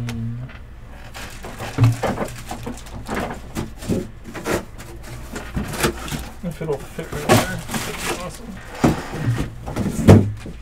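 Baseball trading cards flipped by hand through a stack, one after another, with frequent light snaps and slides of card on card. Quiet, indistinct talk runs underneath.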